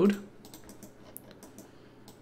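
A few faint, scattered clicks of computer keys and a mouse as a search entry is chosen and a node is placed in software.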